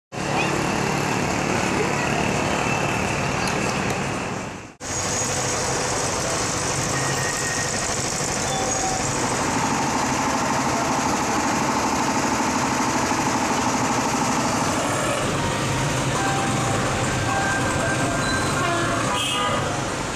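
Busy street and market noise: a steady mix of motor traffic and background crowd voices, broken by a short dropout about five seconds in.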